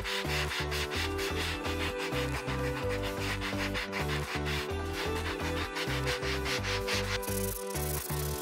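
Sandpaper rubbed by hand over a weathered olive-wood log, in quick, evenly repeated back-and-forth strokes. Background music with a steady beat plays underneath.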